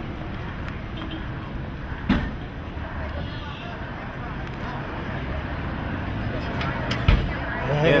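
Busy street background of traffic and a murmur of voices, with two sharp knocks, one about two seconds in and one near the end.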